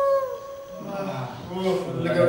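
Voices: a short high whine that falls in pitch, then a man's low, indistinct speech.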